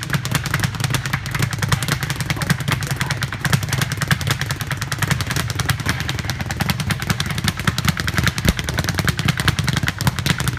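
Speed bag punched in fast, continuous combinations, the bag rebounding off a round wooden platform in a rapid, even drumming rattle.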